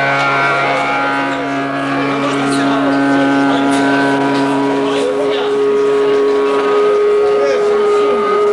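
Amplified electric guitars sustaining long held notes. The held pitch shifts to a higher note about five seconds in.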